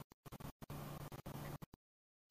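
Faint microphone hiss with a low steady electrical hum, cutting in and out abruptly many times with short gaps of dead silence, as if gated or dropping out; it cuts out entirely near the end.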